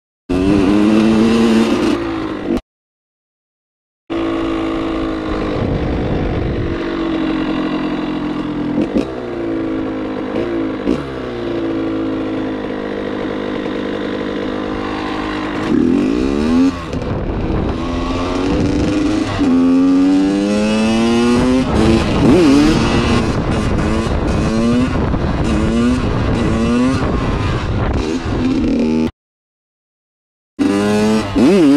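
Dirt bike engine revving hard and falling back through the gears while riding, its pitch climbing and dropping again and again, on a freshly fitted piston and honed cylinder that are still being broken in. The sound drops out briefly twice in the first few seconds and again near the end.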